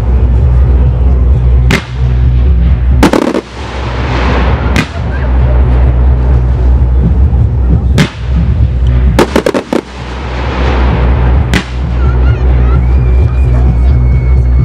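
Aerial fireworks bursting: a series of sharp reports, a few at a time, with quick clusters about three and nine seconds in. Each cluster is followed by a spell of crackling from the bursting stars. Music with a steady bass plays underneath.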